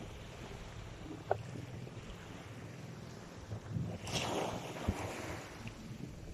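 Small waves washing onto a sand beach, one wash swelling about four seconds in, over a low rumble of wind on the microphone.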